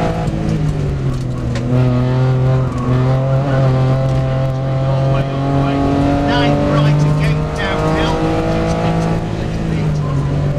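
Rally car engine heard from inside the cabin, its revs climbing and dropping repeatedly through gear changes on a twisty stage. A high wavering squeal comes in about six seconds in and lasts a couple of seconds.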